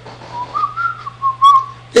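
Whistling: a short run of clear whistled notes stepping up and down in pitch, over a faint steady hum.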